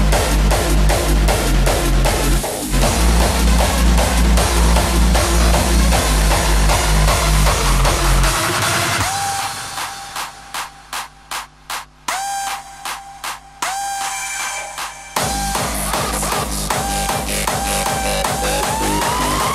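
Hardstyle music mixed live by a DJ, with a pounding four-on-the-floor kick and bass. About 8 s in the kick drops out into a breakdown of choppy, stuttering synth stabs. The kick returns about 15 s in, under a rising synth line.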